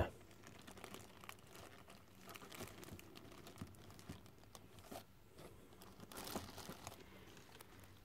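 Faint rustling and light clicks of hands working a tomato cutting into a small plastic pot of soil, with a short, slightly louder rustle near the end.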